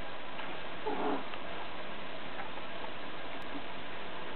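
A house cat gives one short, faint mew about a second in, over a steady background hiss.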